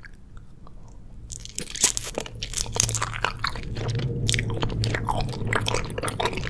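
A bite into an eyeball gummy, a white gummy shell around red jelly, with one sharp crunch a little under two seconds in. Close-up crunching and wet chewing follow and continue.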